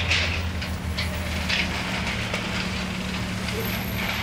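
A large engine idling with a steady low hum. Short rushing bursts sound over it at the start and again about a second and a half in.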